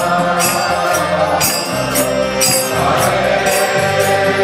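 Kirtan: voices chanting a devotional mantra over sustained harmonium chords, with a jingling metal percussion beat about twice a second.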